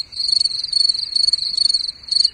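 Cricket chirping: a high, rapid trill with a few short breaks.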